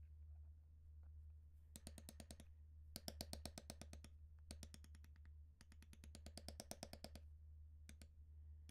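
Steel leather beveler struck by a maul in quick light taps, about ten a second, in several runs of half a second to over a second, as it is walked along the cut lines of tooling leather. A steady low hum lies underneath.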